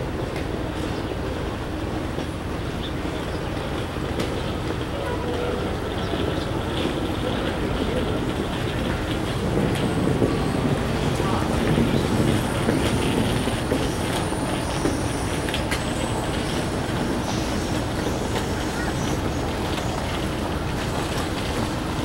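Amtrak Northeast Regional passenger train standing at the platform, its equipment giving a steady rumble that swells for a few seconds around the middle, with scattered faint clicks.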